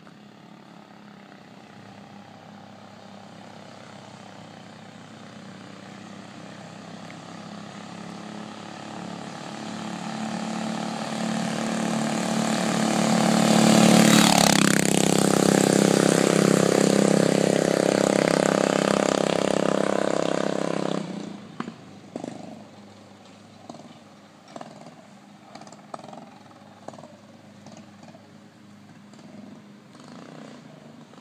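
Motorbike engine growing steadily louder as it approaches, passing close about halfway through with a drop in pitch, then running loud and steady as it pulls away until it suddenly falls quiet about two-thirds of the way in.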